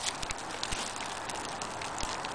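Small campfire of sticks and dry leaves crackling, with faint scattered ticks over a steady hiss.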